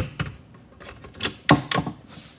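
Handling noise of a phone being adjusted on a hard countertop: a string of irregular clicks and knocks, the loudest a little past halfway.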